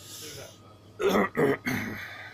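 A man clearing his throat: three short, rough bursts in the second half.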